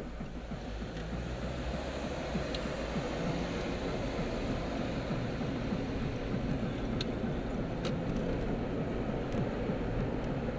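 Car engine and road noise heard from inside the cabin as the car drives through a turn and picks up speed, growing louder over the first few seconds. A few faint sharp ticks are heard, the first about two and a half seconds in and the rest near the end.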